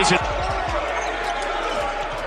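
Basketball dribbled on a hardwood court: a quick run of low bounces over steady arena background noise.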